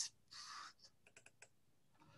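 Near silence with a soft hiss, then a quick run of about five faint clicks on a computer.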